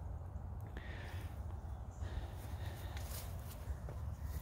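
Quiet outdoor background: a faint, steady low rumble with light noise and no distinct sound event.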